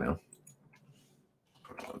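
Mostly near silence after a short spoken word, with a few faint clicks from a computer's input devices while numbers are entered in editing software.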